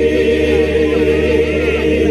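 Mixed choir of men's and women's voices singing in harmony, holding one long chord with a low bass line beneath.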